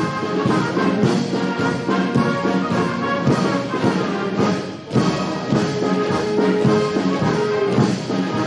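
A brass band plays ceremonial music, brass with drums, as troops march in step. The music dips briefly about five seconds in.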